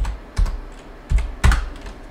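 Computer keyboard being typed on: about five separate keystrokes at uneven intervals.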